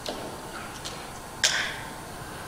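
A quiet pause in a meeting room, with faint room noise. There are a few small clicks, and one short sharp noise about one and a half seconds in.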